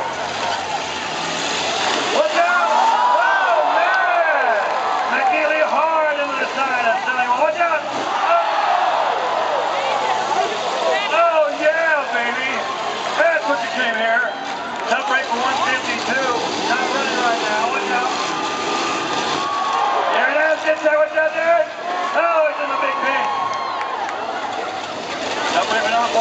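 Motorhome engines running in a demolition derby, under an announcer's voice over the loudspeakers.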